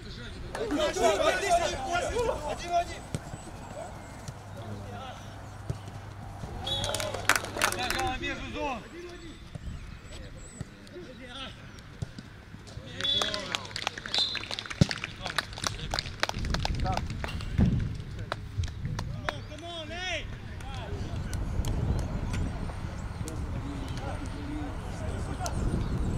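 Footballers shouting short calls to each other on the pitch during play. About halfway through comes a quick run of sharp knocks, and a low rumble fills the last third.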